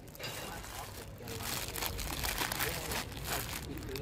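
Clear plastic snack bag being pulled open and handled, crinkling on and off, a little louder after the first second.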